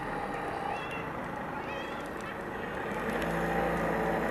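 A large outdoor bonfire burning, a steady rushing noise with occasional sharp crackles. About three seconds in a vehicle engine's low hum comes in and grows louder.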